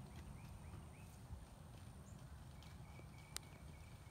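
Near silence: faint outdoor background with a low rumble, a few faint high chirps, and a single sharp click near the end.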